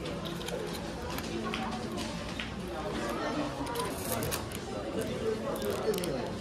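Indistinct voices of people talking, with scattered light clicks and crinkles of plastic packaging being handled.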